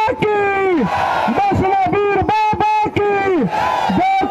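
A man shouting a slogan in a repeated, chant-like rhythm over a crowd, one long shouted phrase about every two seconds, with held notes that drop away at the end.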